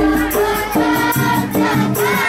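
Sholawat bil jidor: Islamic devotional songs sung by a group over frame drums and a big jidor bass drum, with a steady jingling beat. A deep bass-drum boom sounds at the start.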